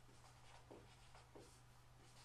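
Faint squeaks and scratches of a marker pen writing on a whiteboard: a handful of short strokes as letters are drawn.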